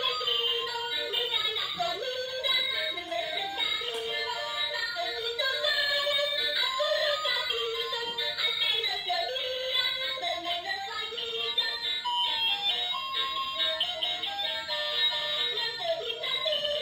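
A toy singing doll's built-in speaker playing a song: music with a synthetic-sounding sung voice, thin with little treble, running without a break.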